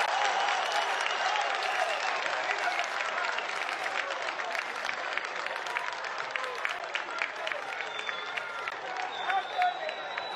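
Stadium crowd clapping and shouting in celebration of a goal, with many separate claps heard over the voices. The noise slowly dies down.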